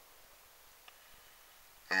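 Near silence: faint steady hiss with one faint click about halfway, then a man's voice starts speaking at the very end.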